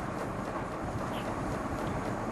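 Steady background noise, an even hiss and low rumble with no clear rhythm or tone and no voice.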